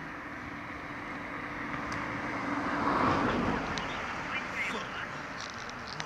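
Outdoor background noise with a vehicle passing: a broad rush that swells to a peak about three seconds in and fades away.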